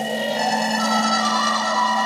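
Psytrance track intro: steady sustained synthesizer drones and pads with a few gliding electronic tones, no beat yet.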